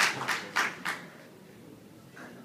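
Audience hand clapping in a steady rhythm, about three claps a second, trailing off about a second in to quiet room tone.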